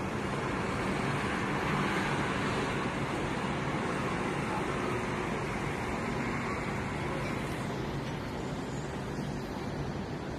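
Distant city road traffic heard from high above: a steady wash of traffic noise with no distinct vehicles standing out, swelling slightly about two seconds in.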